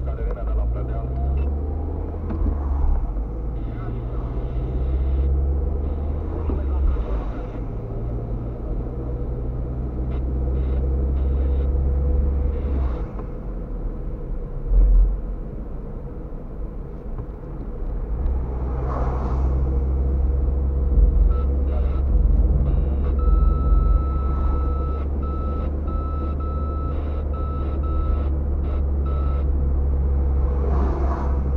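Steady low engine and tyre rumble heard from inside a car driving on a wet road, with other vehicles swishing past now and then. Near the end a run of short, even electronic beeps sounds.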